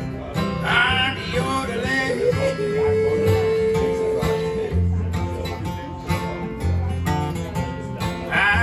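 Two acoustic guitars strummed in a country-blues rhythm with a picked bass line. A wordless vocal yodel rises over it about a second in and settles into one long held note in the middle.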